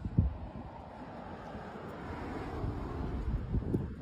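Gusty wind buffeting the microphone, an uneven low rumble, with a sharp bump just after the start.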